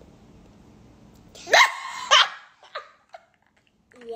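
Two loud, short barks about half a second apart, each rising sharply in pitch, followed by a couple of faint clicks.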